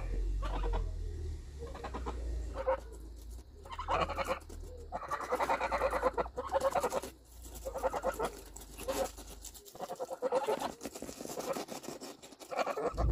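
Domestic geese feeding on a hand-held lettuce: rapid beak clicks and crunching of the leaves come in bursts every second or two, mixed with soft, low goose calls.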